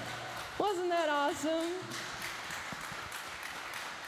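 Audience applauding at the end of a song, with a woman's voice heard briefly about half a second in.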